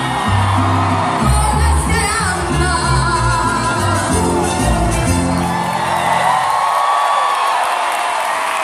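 Live band and female lead vocal finishing a pop song, with the crowd whooping. About seven seconds in the bass and drums drop out, leaving a long held sung note over the crowd.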